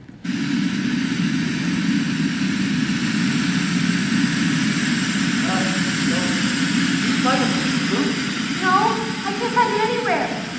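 Waterfall sound effect played over the theatre's speakers: a loud, steady rushing roar of water that cuts in suddenly just after the start. Voices talk over it from about halfway through.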